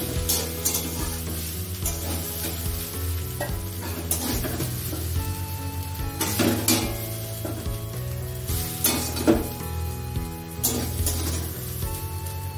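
Food sizzling as it fries in a steel kadai, stirred with a metal spatula that scrapes and clanks against the pan several times.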